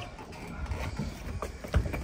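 Wrestlers' feet knocking and thudding on a wooden deck over a low background rumble, with a heavier thump near the end.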